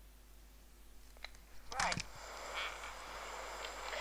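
A faint click from the cassette player's controls. About halfway through, the steady hiss of a cassette tape starting to play back comes in and holds.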